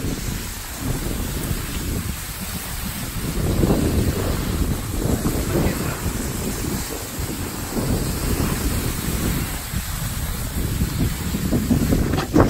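Wind buffeting a handheld phone's microphone: a low, rushing noise that swells and eases in gusts.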